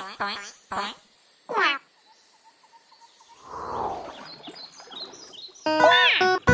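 Cartoon duck voice effects: a quick run of short squawky, quack-like calls, the last one longer and louder with a falling pitch. After a pause a short muffled rumbling noise follows, and guitar music starts just before the end.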